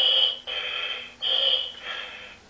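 Buzz Lightyear talking toy's built-in speaker playing an electronic sound effect as its microphone mode is switched on. It is a high steady tone over a hiss, coming in several short pulses.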